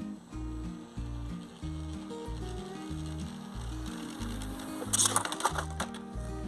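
Background music with a steady bass beat. About five seconds in comes roughly a second of loud rattling clatter, the small balsa RC Piper Cub model bumping hard along the asphalt at speed.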